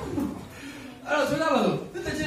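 A man speaking into a handheld microphone, his voice falling in pitch in the louder stretch in the second half.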